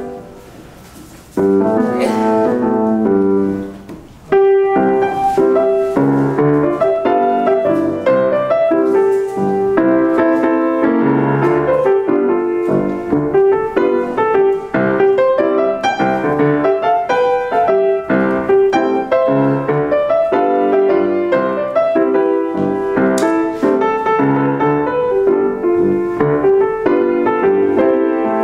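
Solo grand piano playing jazz: a single chord struck about a second and a half in and left to ring, then from about four seconds on a continuous flow of melody over chords.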